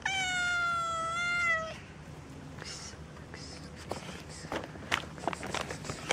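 Tortoiseshell cat giving one long, loud meow lasting under two seconds, followed by faint scuffs and clicks.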